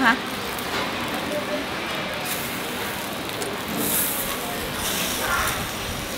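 Cubes of beef sizzling steadily on a wire grill over a charcoal brazier.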